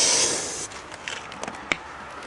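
Aerosol can of Raid insecticide spraying with a steady hiss that cuts off about half a second in. After it stops come a few faint clicks and handling noises, the sharpest near the end.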